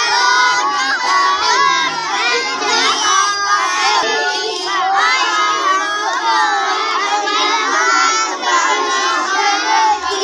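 Many young children reading their lessons aloud from primers all at once, a loud, continuous jumble of overlapping high voices with no pause.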